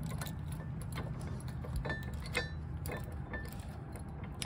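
Faint metallic clicks and rattles of a keyed hitch-pin lock and its key being handled as the lock is fitted onto the pin end at a trailer hitch receiver, over a steady low hum.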